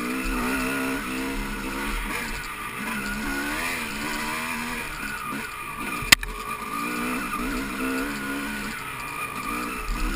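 Off-road dirt bike engine close to the microphone, its revs rising and falling over and over as it is ridden along a rough trail. A single sharp knock comes about six seconds in.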